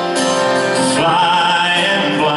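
Live slow country love song: a male voice singing over strummed acoustic guitar and a backing band.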